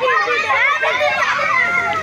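A crowd of children shouting and chattering, many high voices overlapping at once.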